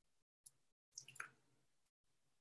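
Near silence, with a few faint, brief clicks about a second in.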